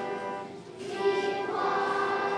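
Children's choir singing in unison, with a short break between phrases just under a second in before the next phrase starts.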